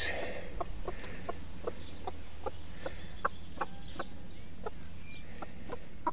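A broody chicken hen clucking in a steady run of short, quick clucks, about two or three a second. This is a hen's food call, calling her chicks to mealworms.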